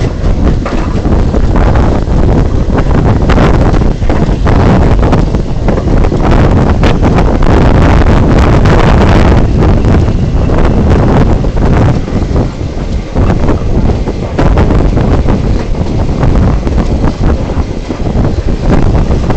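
Heavy wind buffeting the microphone in uneven gusts, over the running noise of a moving train.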